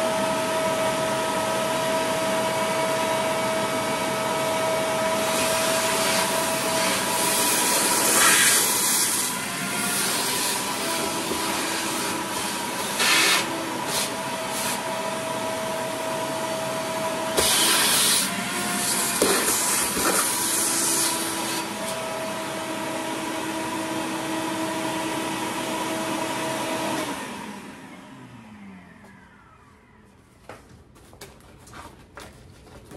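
Vacuum cleaner running with a steady hiss and whine, its pitch shifting now and then as the nozzle works inside an emptied kitchen drawer, with a few brief louder rushes of air. About three seconds before the end it is switched off and the motor winds down with a falling whine.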